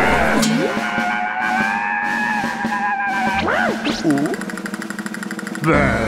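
Cartoon soundtrack: background music under wordless character voices, a held shriek or laugh for the first few seconds. A couple of quick swooping cartoon sound effects come about three and a half seconds in, and a loud yell starts just before the end.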